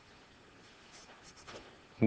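Faint scratch of a marker pen drawing a short stroke on paper, about a second in, against near-silent room tone.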